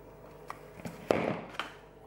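Kitchen handling noises as a plastic mixing bowl and packets are moved on a bench: a few light taps and clicks, with one sharper knock about a second in.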